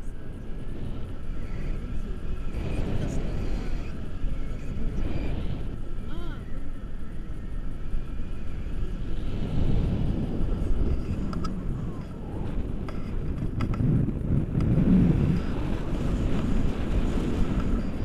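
Airflow buffeting the camera's microphone in flight on a tandem paraglider: a steady low rumble. Voices talk indistinctly at times.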